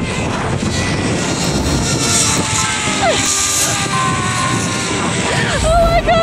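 Steady rushing noise of a zipline ride, wind and the trolley's pulleys running along the steel cable, with background music under it.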